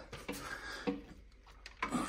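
Faint handling noise: light knocks and rubbing as a radio-control car and its plastic body are worked out from a cluttered shelf, with a few small clicks about halfway and near the end.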